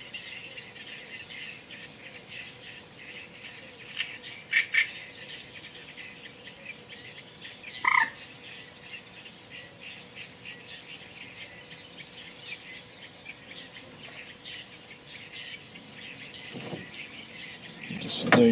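Birds calling in a reedbed: a steady faint chatter with a few louder short calls about four to five seconds in and one louder call about eight seconds in.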